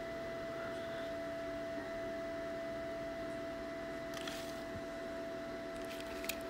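Steady room hum and hiss with a few fixed tones, with a brief faint scrape about four seconds in as a small toy vehicle is moved across the table.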